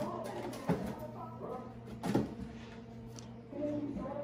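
Spice bottles and jars knocking against each other and the shelf as they are moved about in a kitchen cabinet, with two sharper knocks about a second and a half apart.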